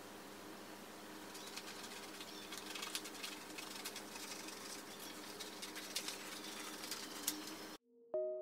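Faint rustling of a plastic window-film sheet and small snips of scissors cutting it, over a steady low hum. The sound cuts off abruptly just before the end.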